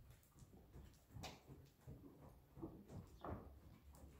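Faint, irregular soft thuds of a horse's hooves on loose dirt arena footing as it moves around on the lunge line.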